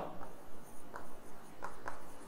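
Stylus writing on a tablet screen: a few faint, short taps and scratches as handwritten letters are drawn.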